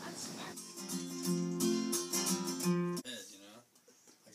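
Acoustic guitar music, strummed chords, starting about half a second in and breaking off sharply near the three-second mark. A quieter voice follows near the end.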